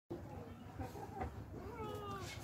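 A faint animal call with a gliding pitch near the end, over low background noise.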